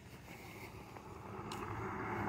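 Faint noise of a car on the street, growing steadily louder as it approaches.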